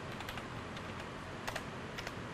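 Typing on a computer keyboard: irregular key clicks over a low steady hiss, one click a little louder about three-quarters of the way through.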